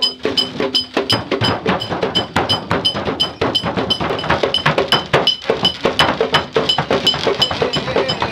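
Loud, dense percussion: drumming and wooden knocks under a steady, ringing metallic strike about three to four times a second. A low held tone comes in about six seconds in.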